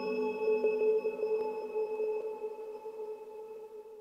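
Eurorack modular synthesizer patch: bell-like Mutable Instruments Rings resonator notes through an Intellijel Rainmaker delay, a cluster of steady ringing tones slowly dying away.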